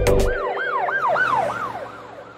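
A song's electronic beat cuts off about half a second in, leaving a cartoon police siren sound effect that wails up and down about four times a second and fades away.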